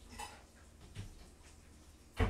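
Faint room tone with a low steady hum, broken by two light knocks about a second apart.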